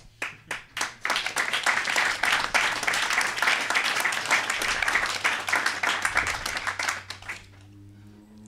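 Audience applauding: a few scattered claps, then steady clapping from many hands for about six seconds that dies away near the end.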